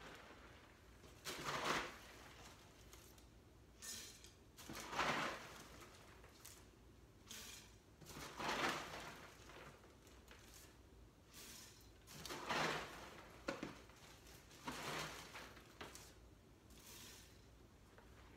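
Dry Cheerios cereal poured from its box into a measuring cup and a mixing bowl, a rustling rattle of the little O's. Several pours of about a second each come every three to four seconds as four cups are measured out.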